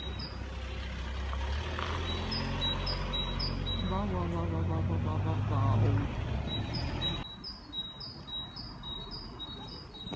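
A motor vehicle running on the street, its engine note rising for a couple of seconds and loudest about six seconds in before dropping away. A small bird chirps in quick, evenly repeated notes over it, most clearly in the last few seconds.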